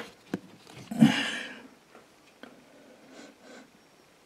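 A couple of light clicks of hands handling black trumpet mushrooms, then a loud short sniff about a second in as they are smelled, followed by faint rustles.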